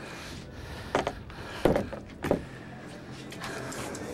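Three short, sharp knocks, about a second and then half a second apart, over a steady low hum.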